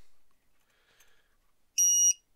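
A single short, high-pitched electronic beep near the end, steady in pitch, after a stretch of faint handling noise.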